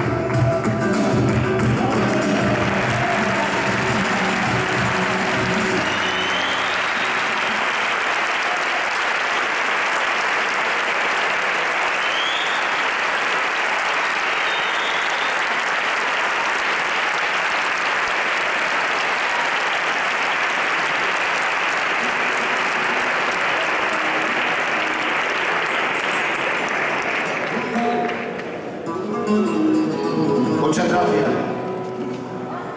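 A theatre audience applauding at length as the flamenco guitar and singing fade out in the first few seconds. The applause holds steady, then dies away near the end.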